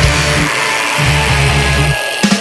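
Heavy metal music with distorted electric guitar; the low end drops out for about half a second starting half a second in, then the heavy part comes back.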